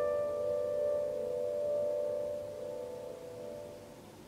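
A piano chord ringing out after being struck, several notes held together and slowly fading away.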